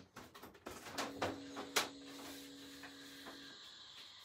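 A picture frame and its cardboard backing being handled: scattered light clicks and rustles, with one sharper click near the middle.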